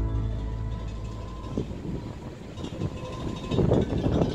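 Soundtrack music fading out, giving way to the low, steady rumble and noisy ambience of a cruise ship's open deck in harbour, swelling roughly near the end.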